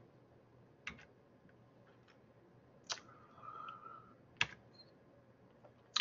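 Three faint, sharp computer clicks about a second and a half apart while lecture slides are advanced, with a faint short steady hum between the second and third.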